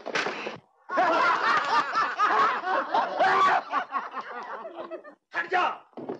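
A man laughing loudly in a long run of repeated bursts, dying away just before five seconds, with one more short vocal burst near the end.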